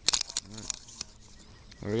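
Handling noise from a handheld camera being swung around: a quick cluster of clicks and rustles at the start, then a short vocal sound. Speech begins near the end.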